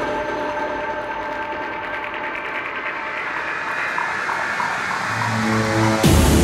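Psytrance intro build-up: a synthesized noise sweep that rises and brightens over sustained synth tones, growing slightly louder. Low bass tones step in during the last second.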